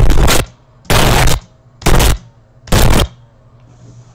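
Car crash recorded from inside the cabin: a loud continuous crash noise stops about half a second in. Three loud impacts follow, each about half a second long and about a second apart, as the car tumbles.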